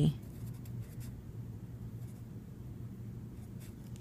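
Pencil writing on lined notebook paper: faint, irregular scratching of the strokes.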